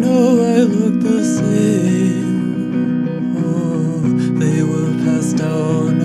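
Acoustic guitar music from a slow song, played steadily between sung lines, with a wavering melody line over it in the first second.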